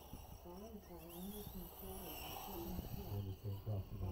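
A man's voice talking or laughing indistinctly, with faint steady high-pitched tones underneath.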